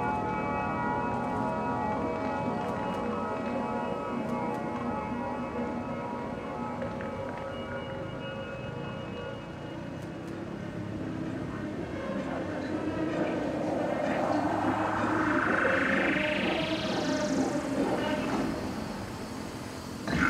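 Electronic sound-design score of a building projection show: sustained synthesizer tones, then a long rising sweep that climbs steadily higher over several seconds toward the end.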